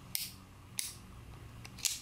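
Lock of a Pietta-made Griswold and Gunnison brass-framed cap-and-ball revolver being worked by hand: three sharp clicks as the hammer is drawn back and the cylinder turns and locks up, which it does firmly.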